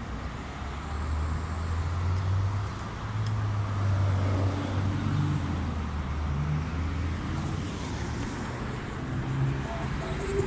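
Street traffic noise with a vehicle engine's low hum that comes up about a second in and holds for several seconds before easing, over a steady wash of road noise.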